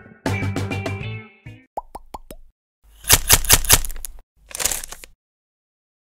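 Outro music with guitar ends about a second and a half in. It is followed by a short audio logo sting: four quick plopping blips, each dropping in pitch, then two bursts of crackly, sparkling noise.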